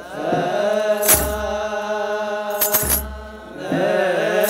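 Ethiopian Orthodox clergy chanting liturgical zema together, holding long drawn-out notes, to the shaking of metal sistra and drum beats: one strike about a second in and two close together near three seconds. The voices briefly drop away just after the second pair of strikes.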